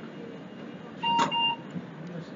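A single electronic beep about a second in: one steady mid-pitched tone lasting about half a second.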